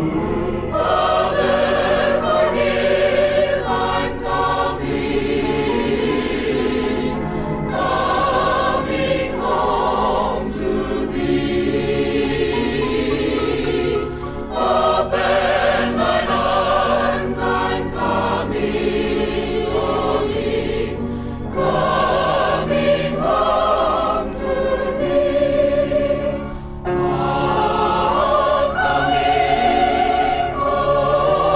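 A 40-voice choir singing a gospel song, from a vintage vinyl LP recording.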